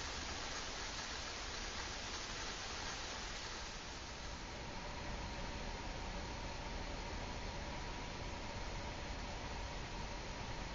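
Steady soft hiss of a homemade soda-can alcohol stove burning under a pot of water that is just short of the boil. A faint steady tone joins about halfway through.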